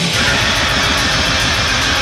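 Death/doom metal recording: heavily distorted electric guitars over a fast, even pulse of drums in the low end, the guitars turning brighter just after the start.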